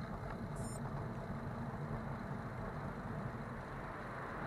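Steady low rumble of wind and tyre noise picked up by a camera on a moving bicycle.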